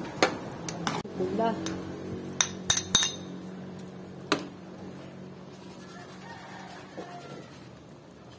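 Metal spatula clinking and scraping against a metal wok while a coconut-milk mixture is stirred: a run of sharp clinks in the first half, the loudest cluster about three seconds in, then quieter stirring.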